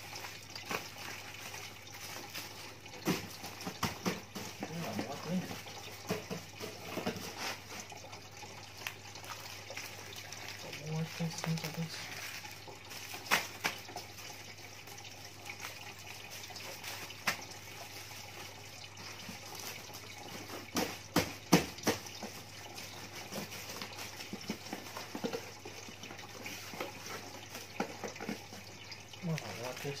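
Plastic DVD cases being handled and stacked on a tiled floor, with scattered sharp clacks, the loudest cluster a bit past the middle, over a steady hiss and low hum.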